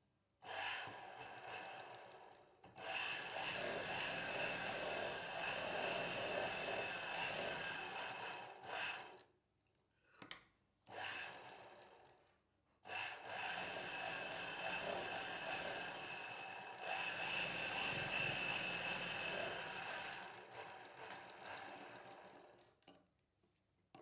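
Straight-stitch sewing machine running as it stitches a seam through blouse fabric. It runs in two long stretches of about eight seconds each, separated by a pause with a short burst in between.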